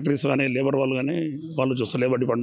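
Speech only: a man speaking in an interview, with a brief pause just past the middle.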